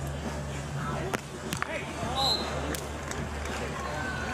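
A beach volleyball being struck by hands: three sharp slaps within about two seconds of a rally, over voices and crowd murmur with a steady low hum.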